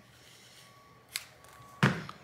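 Two sharp clicks, the second louder, from a thin pry tool being worked into the seam between a smartphone's plastic back cover and its frame.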